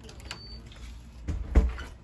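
Two dull bumps in quick succession about a second and a half in, the second much louder, with a short high thin tone earlier.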